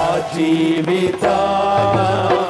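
Worship music: a voice singing long held, chant-like notes over instrumental accompaniment with sustained low notes.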